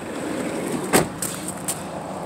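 Footsteps crunching on gravel as someone walks across a parking lot, with one sharp crunch about a second in the loudest, over steady outdoor background noise.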